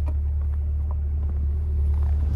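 C8 Corvette's 6.2-litre V8 idling as a steady low rumble, with a couple of faint clicks as the car's door is opened.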